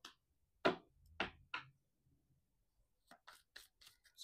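Tarot cards being handled and shuffled: three sharp card snaps in the first couple of seconds, then a quick run of small card clicks near the end as shuffling gets going.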